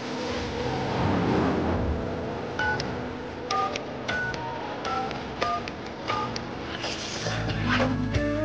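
Telephone keypad tones: a string of about ten short two-note beeps of a number being dialled, starting a few seconds in, over background music.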